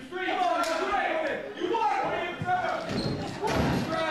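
Indistinct voices talking in a large hall, with a few thuds of bodies hitting the wrestling ring's canvas in the second half, as one wrestler rolls the other up.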